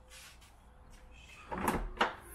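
About a second and a half of near silence, then a single short clunk near the end.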